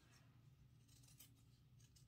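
Faint snips of scissors cutting felt, a few light cuts about a second in, otherwise near silence.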